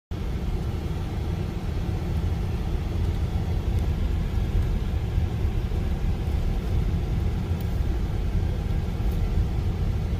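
Steady low rumble of an electric car's tyres rolling slowly over an unpaved lane, heard inside the cabin, with a few faint ticks.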